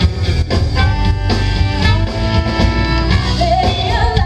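Live rock band playing an up-tempo song: drum kit, bass and electric guitar, with trumpet and saxophone holding notes over the beat.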